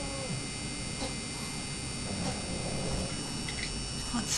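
Steady background hiss and low electrical hum with a faint high-pitched electronic whine, and only a few faint soft noises.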